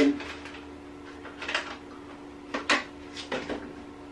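A few light clicks and knocks of a small food tub and fork being handled at an open fridge, spread over a few seconds, over a steady low hum.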